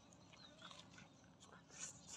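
Faint sounds of eating grilled meat by hand: soft chewing and tearing with small mouth clicks, and a brief louder smack near the end.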